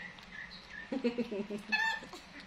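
A young macaque giving one short, high-pitched coo near the end, after a few faint chirps.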